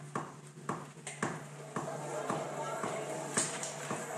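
Recording software's metronome count-in ticking evenly, a little under two clicks a second, over a steady low hum. Track playback begins to come in under it from about two seconds in.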